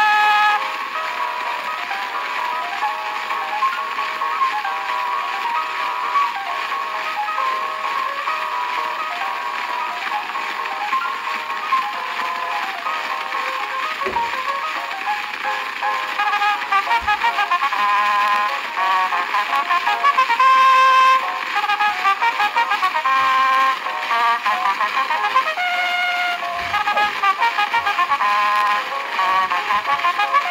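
An early recording from about 1897–98 of a solo cornet playing a fast polka with quick runs of notes. The sound is thin, with almost no bass.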